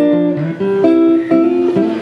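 Acoustic guitar strummed between sung lines of a folk song, with held melody notes that step in pitch over the chords.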